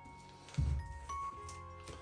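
Soft background music with held notes, broken by a dull low thump about half a second in and a fainter one about a second in.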